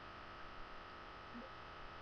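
Steady low hiss with a thin, steady high whine, the background noise of a webcam's microphone, with a tiny faint sound about a second and a half in.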